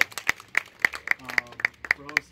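Scattered, uneven handclapping from a small audience, a handful of people applauding.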